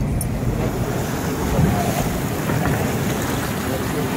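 Wind buffeting the microphone and water rushing and splashing against the hull of a small boat under way across open harbour water, a steady, loud noise.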